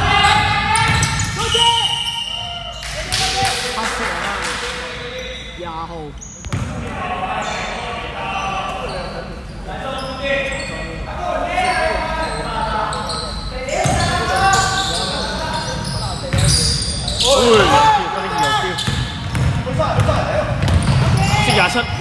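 Basketball game on a hardwood court in a large echoing hall: the ball bouncing and players' voices calling out, with sharp knocks and short squeals scattered through.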